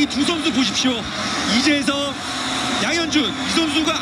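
Stadium crowd cheering in a televised football match, celebrating a just-scored free-kick goal, with a commentator's voice over the steady roar.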